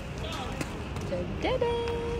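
Footsteps on stone paving over a steady low rumble of wind on the microphone. Near the end a young child's high voice rises and holds one steady note for about a second.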